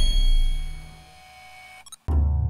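Logo sting sound effect: a bright chime over a low boom, ringing out and fading away over about a second. A brief flutter of ticks follows just before the sound cuts out.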